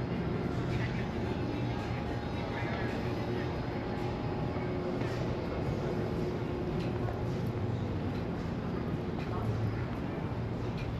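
Open-air shopping mall ambience: a steady low hum with faint, indistinct voices of passers-by.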